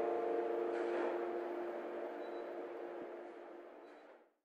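The final held chord of a pop song fading out, growing steadily fainter.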